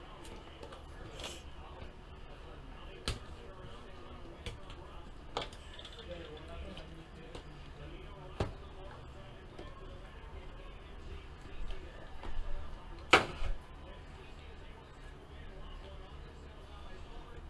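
Sports-card boxes and card packaging being handled by hand: a few scattered sharp clicks and taps, the loudest about 13 seconds in, over a faint low hum.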